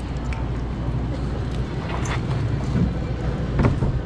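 Busy grocery store checkout background: a steady low hum with scattered clicks and knocks and faint voices.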